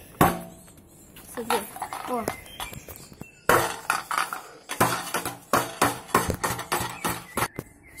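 Stunt scooter rattling and clicking, a noise that comes from its rear brake. A few clicks at first, then a quick, irregular run of rattling clicks from about halfway through.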